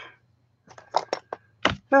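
A few light clicks, then a sharper knock about one and a half seconds in: clear plastic stamp blocks being handled and set down on a craft desk.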